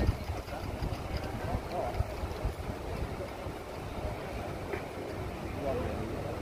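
Outdoor street background: an uneven low rumble with faint, distant voices of people talking.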